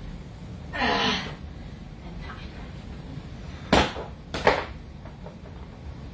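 A strained groan of effort falling in pitch about a second in, then two loud thuds of dumbbells dropped to the floor, under a second apart, about four seconds in.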